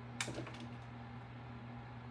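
A single light knock about a fifth of a second in as a clear acrylic stamp block is pressed down onto cardstock, followed by a faint steady low hum.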